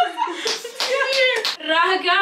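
About five sharp smacks in quick succession, like hands slapping, with women's voices around them.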